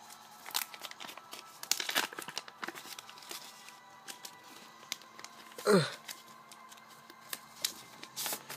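Paper rustling and crinkling from hand-drawn paper cards being handled and a folded paper booster pack being pulled open, in scattered light rustles and taps. About two-thirds of the way through, one short, louder sound falls in pitch.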